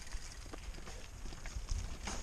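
Mountain bike rolling down a dirt trail: low rumble from the tyres and the ride, with scattered light clicks and rattles from the bike and loose stones.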